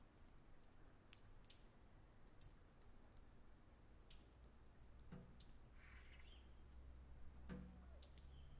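Near silence: faint scattered clicks over a low hum, with two faint brief sounds about five and seven and a half seconds in.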